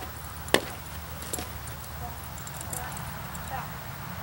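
A single sharp click about half a second in, then a softer one about a second later, with faint scattered crackling, over a steady low rumble.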